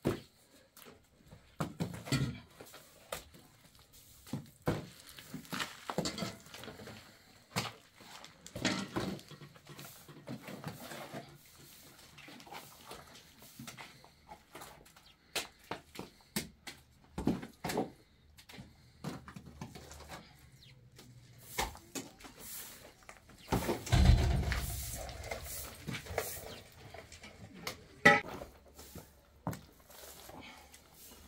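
Steel trowel and hand float scraping and clinking against a basin of mud plaster and smoothing it onto a wall, in scattered short scrapes and taps. A heavier thump comes about two-thirds of the way through.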